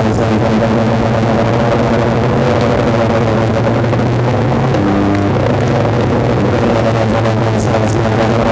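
Hard techno track in a breakdown: the kick drum drops out and a sustained low synth drone holds, shifting pitch about five seconds in. The beat comes back in near the end.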